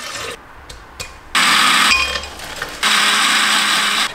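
Countertop blender running in two bursts, blending a fruit smoothie: a short pulse of about half a second a little over a second in, then a longer run of about a second near the end. Soft clicks and handling sounds come before it.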